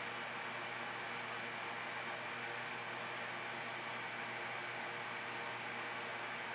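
Faint, steady background hiss with a low hum and a thin, steady high tone underneath. Nothing starts or stops.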